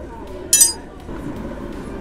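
A single sharp clink about half a second in, ringing briefly at a high pitch, over a low background of street noise.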